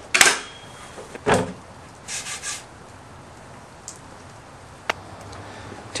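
A plywood table top with folding steel legs being handled and flipped over: a loud knock right at the start, a second thump about a second later, then a short scraping rub about two seconds in and a couple of small clicks.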